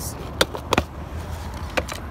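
Sharp clicks from a black plastic rodent bait station as its lid is unlatched and opened: two close together about half a second in and one more near the end, over a steady low rumble.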